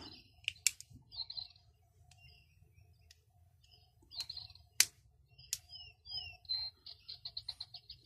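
Bird chirping with short whistled notes sweeping up and down, ending in a quick rapid trill. Two sharp clicks cut through, the louder about five seconds in, as the steel multitool is handled and its handles are swung open to expose the pliers.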